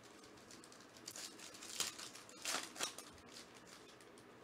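Foil wrapper of a hockey trading-card pack crinkling and tearing as it is pulled open by hand and the cards slide out, in several short bursts from about a second in.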